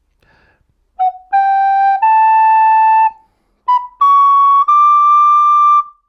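Soprano recorder playing two rising three-note phrases, F-sharp, G, A and then B, C-sharp, high D. Each phrase is one short note followed by two held ones, with a brief pause between the phrases.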